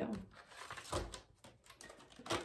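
Tarot cards handled on a wooden table: the deck is squared and set down, with light card clicks and a soft knock on the wood about a second in.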